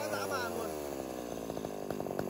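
Echo 332 chainsaw's 33 cc two-stroke engine dropping from high revs, its pitch falling steadily, then settling into an even, rapid idle.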